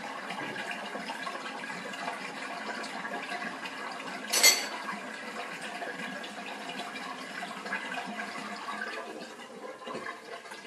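Bosch SHE4AP02UC dishwasher drain pump running steadily and pumping out a full sump of water, without starting and stopping: it pumps properly now that the small drain part is seated correctly. A single sharp knock sounds about four and a half seconds in.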